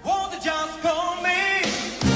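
Male-and-female pop duet singing live with band backing. A long held note wavers in vibrato over sparse accompaniment, then climbs to higher held notes in the second half.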